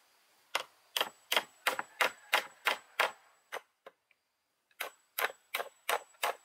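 Hammer blows driving a nail into a wooden pole: a quick run of sharp strikes, about three a second, breaking off for over a second about two-thirds of the way through, then starting again.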